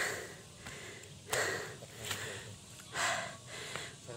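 A man breathing heavily and out of breath while climbing a steep hillside: about four loud breaths, roughly a second apart.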